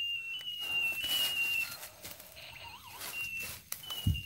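A thin, high whistling tone held for under two seconds, dropping slightly in pitch in small steps, that starts again near the end. Faint rustling steps on the forest floor sound between the whistles.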